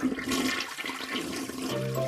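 A toilet flushing, with water rushing steadily. Near the end a low, steady musical note comes in.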